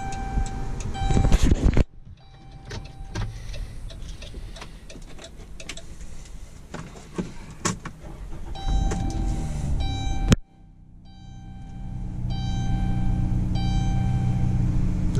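Electronic chime tones and light clicks from the van's dash and key tool. Then, about ten seconds in, the 2019 Dodge Caravan's 3.6-litre V6 starts on the freshly programmed Fobik key and settles into a steady idle hum.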